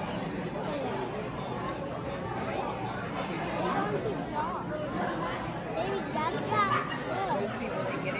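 Overlapping chatter of many voices, with a child's voice rising clearly out of it about six to seven seconds in.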